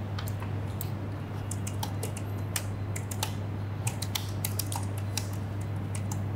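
Typing on a computer keyboard: quick, irregular key clicks over a steady low hum.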